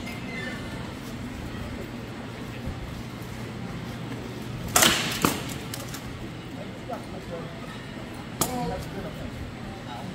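Rattan weapons striking armor and shields in SCA heavy combat: a loud sharp crack near the middle, a second hit about half a second later, and another sharp hit about three and a half seconds after that. The exchange ends with both fighters struck at once, called a double kill.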